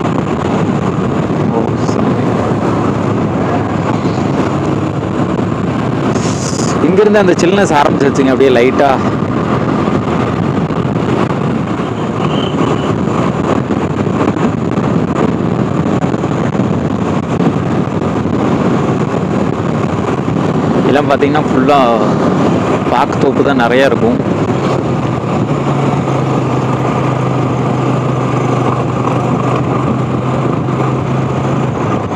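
Steady road and engine noise from a moving vehicle driving along a highway, with a low engine hum settling in near the end.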